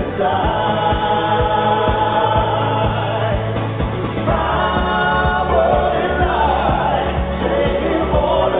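Live synthpop band performance: sung vocals over a steady drum beat and a sustained bass line whose note drops lower about halfway through.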